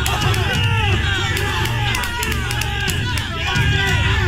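A crowd of many voices cheering and shouting at once, over background music with a steady low bass.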